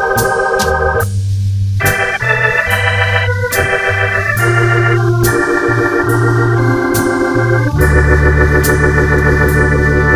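Hammond B3 tonewheel organ playing sustained, wavering chords in a slow jazz ballad, with organ bass notes beneath. Drums keep a light, steady beat of about two strokes a second.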